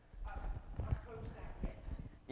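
Faint, distant speech echoing in a large lecture hall, with several soft low knocks.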